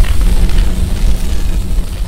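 Cinematic logo-intro sound effect: a loud, deep rumble with a hiss on top, starting to fade out near the end.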